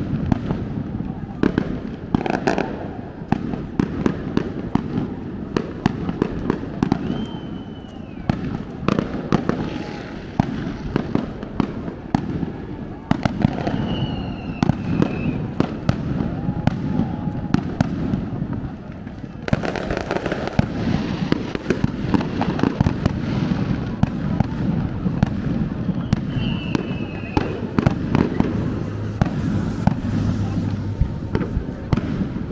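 Fireworks going off over the beach in a continuous run of sharp bangs and crackles, with people talking close by.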